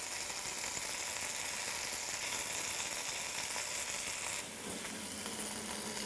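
Steady sizzling of guanciale fat and potatoes frying in oil in a steel pot on the stove. About four seconds in the hiss thins and a low steady hum joins it.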